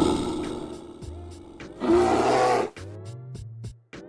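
A cartoon polar bear's roar sound effect dies away over the first second. A second short, loud animal call comes about two seconds in. Then music with a ticking beat of about four notes a second begins.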